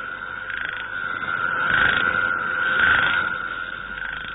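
Frogs croaking steadily, the sound swelling twice toward the middle and easing off near the end.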